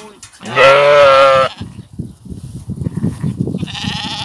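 A sheep bleating once, loudly, for about a second, starting about half a second in; then low scuffling and shuffling noises.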